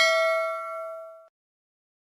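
Notification-bell ding sound effect from a subscribe-button animation: one pitched bell ring that fades and is cut off abruptly a little over a second in.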